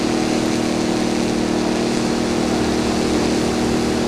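Remote-controlled rescue buoy's motor running steadily at speed as it tows a person through the sea: a low, even hum over a rushing noise.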